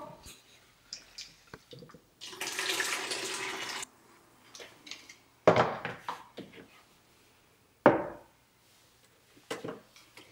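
Pre-wash water being poured out of a UniTank film developing tank, a rush of water lasting about a second and a half, followed later by two sharp knocks as the plastic tank is handled and set on the table.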